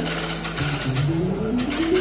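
Live band music: a held chord ends and a run of low notes climbs step by step, over sharp percussion hits.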